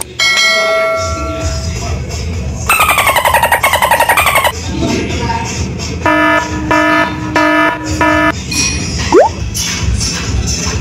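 Background music with comedy sound effects edited in: a ringing tone near the start, a fast rattling warble around three to four seconds in, a beep-like chime repeated four times from about six to eight seconds, and a quick rising whistle near the end.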